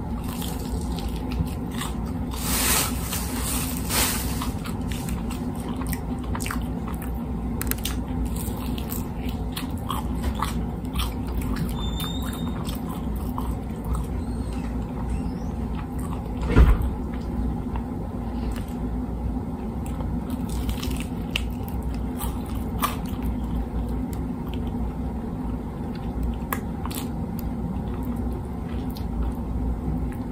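Close-up chewing and crunching of crispy fried chicken, with many small crackles and mouth smacks as he bites and picks meat off the bone. It sits over a steady low hum, with a louder crunch or knock about seventeen seconds in.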